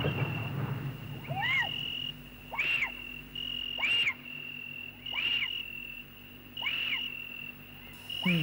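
Eerie horror sound effects: a steady high-pitched whine under a low drone, with a wavering, animal-like call repeating five times at even intervals.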